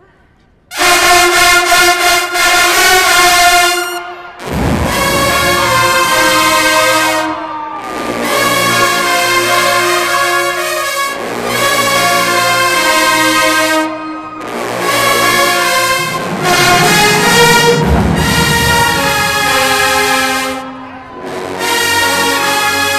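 HBCU show-style marching band brass section (trumpets, trombones, sousaphones) playing loud, sustained chords, starting about a second in and moving in several long phrases with short breaks between them.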